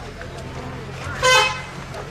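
A vehicle horn honks once, briefly, about a second and a quarter in, over a steady low hum.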